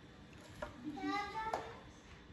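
A child's voice, faint and brief, about a second in, with two light clicks of a nut driver working a 10 mm fastener in the engine's air filter housing.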